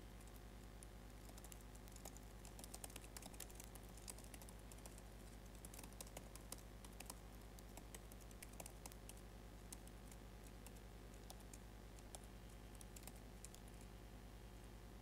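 Faint typing on a computer keyboard: quick, irregular key clicks while terminal commands are entered, over a steady low hum.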